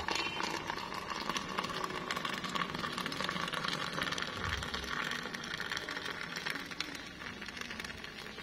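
Hot water poured in a steady stream from a stainless-steel kettle into a ceramic mug of instant coffee mix, splashing as the coffee froths up. The pour runs evenly and eases slightly near the end.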